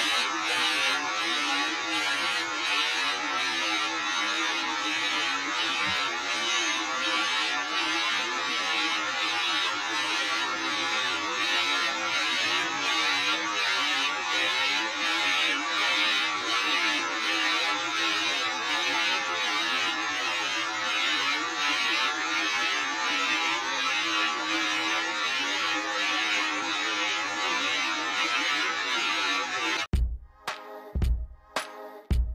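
Steady buzzing static with a faint regular pulse, unchanging throughout.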